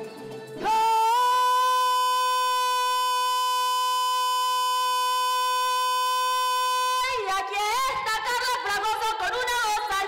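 A woman sings one long held note alone, sliding up into it about a second in and holding it steady for some six seconds. Then a llanera band of harp, cuatro and electric bass comes in under her singing.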